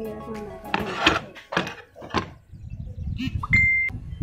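Wooden flat-pack shelf panels being handled: three scraping rustles, then low knocks as the pieces are moved about, and a short high beep near the end.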